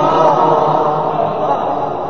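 Male Quran recitation chanted in the melodic tajweed style. A long held phrase gives way to a more blurred, arching vocal sound that slowly fades.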